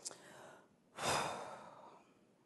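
A speaker's audible breath in a pause of speech: a small mouth click at the start, then one breath about a second in that rises quickly and fades away.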